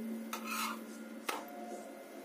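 A flat spatula scraping against a parotta on a tawa, with a short rasp about a third of a second in and a sharp click against the pan just over a second in.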